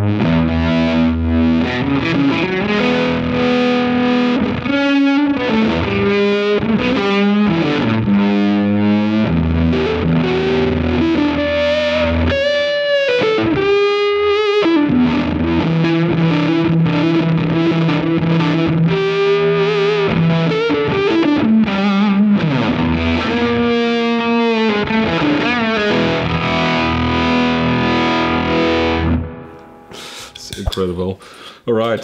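Electric guitar played through the Ami Effects Umami overdrive, set to an almost Tone Bender-like fuzzy gain, and a harmonic tremolo: sustained chords and single-note lines with a steady, even pulsing and a few bent, wavering notes. The playing stops about a second before the end.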